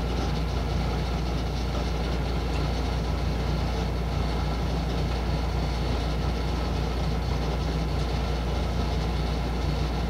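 Steady low background hum that holds an even level throughout, with no distinct events standing out above it.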